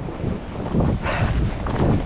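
Wind buffeting an action camera's microphone, a continuous low rumble with a brief hissy gust about a second in.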